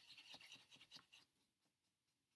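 Near silence, with faint light scratching and rubbing for about the first second: a paintbrush being worked into a pan of watercolor paint.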